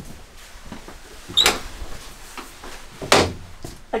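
Wooden bathroom door of a travel trailer being opened: a short click with a brief squeak about a second and a half in, then a knock about three seconds in.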